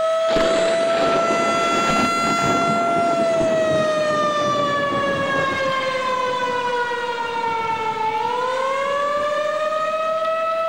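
Outdoor tornado warning siren sounding one long steady tone that slowly sags in pitch, then rises again a little after the middle. A rushing noise lies under it for the first few seconds.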